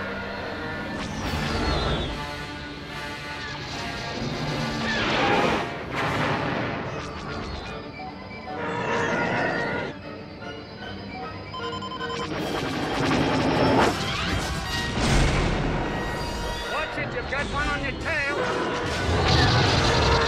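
Orchestral film score playing under space-battle sound effects: starfighter engines sweeping past in falling pitch glides several times, mixed with laser fire and explosions.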